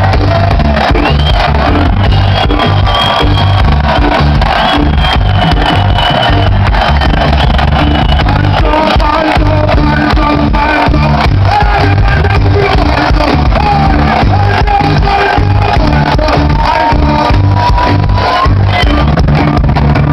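Live reggae band playing loudly, with a heavy pulsing bass and keyboard and vocal lines over it, heard from inside the crowd.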